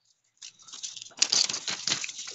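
A notebook page being turned over by hand: dry paper rustling and crackling, starting about half a second in and growing louder.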